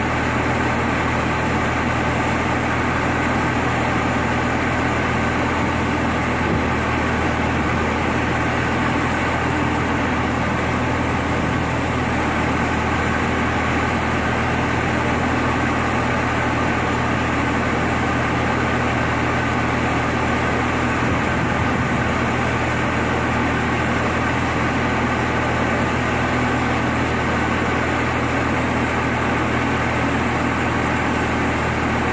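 Heavy diesel engine idling steadily, a constant low drone that stays at one speed throughout.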